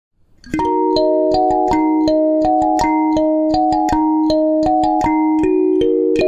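Kalimba playing a melody of plucked, ringing notes, about three a second, starting about half a second in. Each note rings on under the next.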